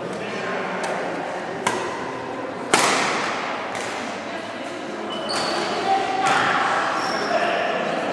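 Badminton rackets striking a shuttlecock during a rally: several sharp cracks, the loudest about three seconds in, each echoing in a large hall over a background of voices.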